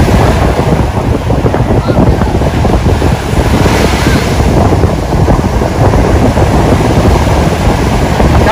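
Ocean waves breaking and surf washing through the shallows, with heavy wind rumbling on the microphone.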